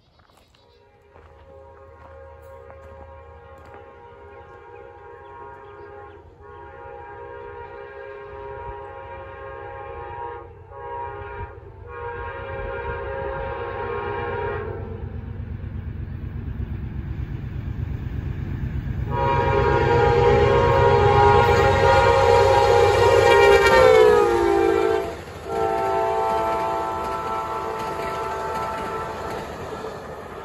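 Amtrak P42DC diesel locomotive approaching at speed and sounding its horn, a chord of several tones in long blasts with short breaks. The horn and engine rumble grow louder until the locomotive passes, when the horn's pitch drops suddenly. The horn then carries on lower and fades as the passenger cars roll by.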